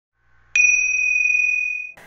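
A single bright bell-like chime, struck about half a second in and ringing on as it slowly fades: an intro logo sting.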